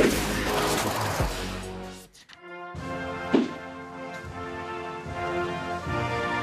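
Television segment jingle: it opens suddenly with a crash-like hit and a falling whoosh, drops out briefly about two seconds in, then carries on as a sustained synthesized chord with another sharp hit about a second later.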